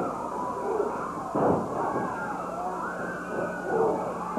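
Arena crowd of wrestling fans yelling and shrieking during the action, many voices rising and falling together, with a brief louder surge about a second and a half in.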